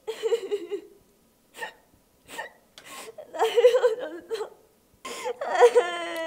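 A young woman crying in short, high-pitched, broken sobs separated by brief silences.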